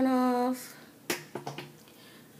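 A woman's voice drawn out on one steady pitch for about half a second, then two sharp clicks about half a second apart.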